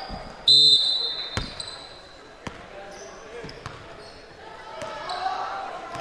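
A referee's whistle blows once, sharp and high, about half a second in; it is the loudest sound. Two thuds of the basketball on the hardwood follow, and gym voices build toward the end.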